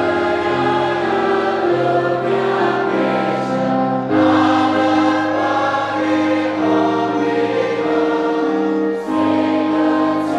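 A large church congregation singing a hymn together in long held notes, swelling about four seconds in and drawing breath for a new phrase near the end.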